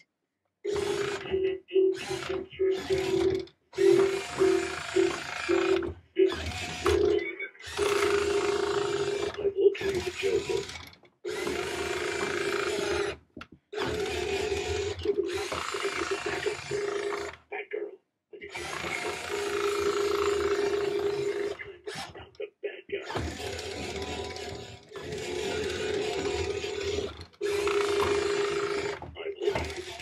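Electric drive motor and plastic gearbox of a remote-control toy truck whirring in repeated runs of one to three seconds, starting and stopping as it drives forward and turns around.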